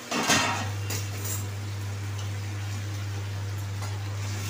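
A steel ladle clattering against an aluminium kadai as masala paste is tipped into hot oil, then a few lighter clinks of metal on metal over faint frying and a steady low hum.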